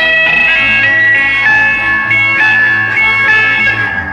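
Isolated lead electric guitar and Hammond organ parts of a 1960s psychedelic rock song, playing without drums, bass or vocals. Held notes step from one pitch to the next about every half second.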